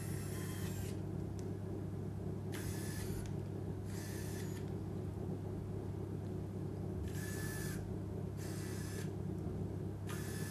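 Finger motors of a Touch Bionics i-LIMB bionic hand whirring in five short bursts of about half a second to a second each as the digits open and close. A steady low hum runs underneath.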